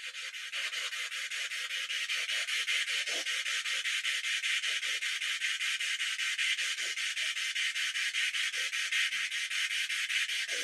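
Spirit box sweeping radio stations: a steady hiss of static chopped into about five pulses a second, with faint brief snatches of sound breaking through.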